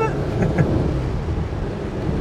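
Inside the cabin of a 1984 Renault 18: the 1397 cc four-cylinder engine running at road speed, with a steady low rumble of engine and road noise.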